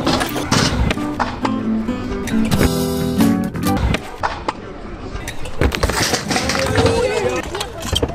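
Stunt scooter wheels rolling on a concrete skatepark ramp, with several sharp knocks. In the second half the scooter clatters down on the concrete as the rider falls hard. Background music and voices run underneath.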